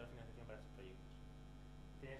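Faint, steady low electrical mains hum on the recording, with faint, indistinct voices in the room.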